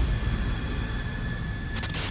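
Jet aircraft engines droning in flight: a steady low rumble with a thin, steady whine above it, and a few sharp clicks near the end.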